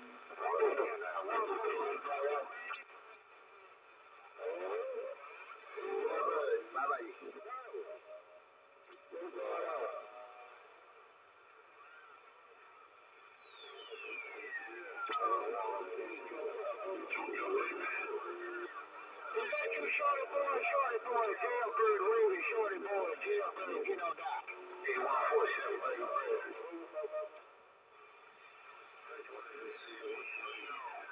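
Voices of distant AM stations on the 11-metre CB band, heard through a CB radio's speaker, garbled and fading under static. A whistle falls steadily in pitch about 13 seconds in and again near the end.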